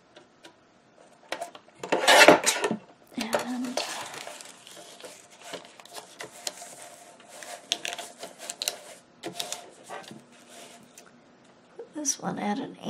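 Sheet of coffee-dyed paper being handled and cut on a paper trimmer, with a loud scraping rush about two seconds in and lighter rustling, sliding and clicks of paper against the trimmer after it.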